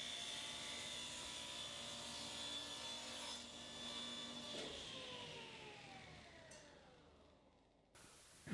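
Table saw running, faint, while a mitre sled carrying a workpiece is pushed through the blade. About four and a half seconds in the saw is switched off and the blade spins down, its whine falling in pitch and dying away over the next two seconds.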